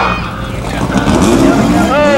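A car engine running, with voices mixed in; in the second half its pitch wavers up and down.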